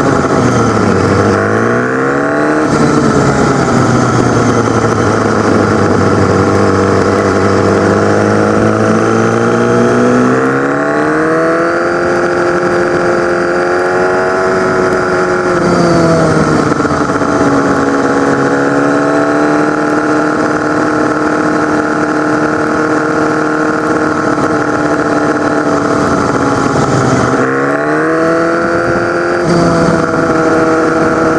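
A sport motorcycle engine heard from on board while riding through town: the revs drop and climb again in the first few seconds, climb again about ten seconds in, ease off around sixteen seconds, then dip and pick up once more near the end. Wind noise runs under the engine.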